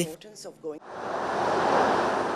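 Audience applauding, fading in about a second in and swelling to a steady level.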